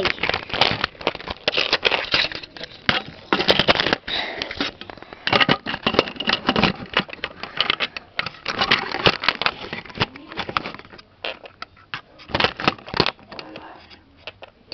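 Irregular clicking and clattering of plastic Lego pieces and minifigures being handled close to the microphone, mixed with rubbing and handling noise.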